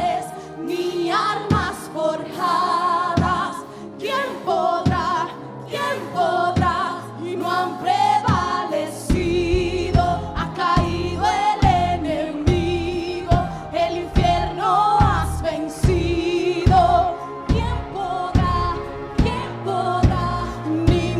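Live worship band: women singing a melody together over keyboard and electric guitars with a steady beat. A heavy bass comes in about halfway through.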